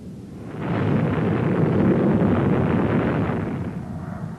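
Rocket motor running: a loud rushing rumble that swells about half a second in and eases off toward the end.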